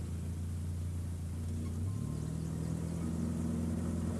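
Engine of a large sedan running steadily as the car drives slowly up a driveway, a low even hum that thickens about halfway through.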